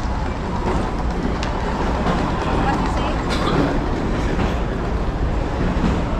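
Steady low rumble of a busy airport terminal concourse, with people's voices in the background.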